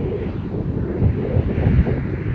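A dump truck going by on the road: a low, heavy rumble of engine and tyres that swells about a second in, with wind buffeting the microphone.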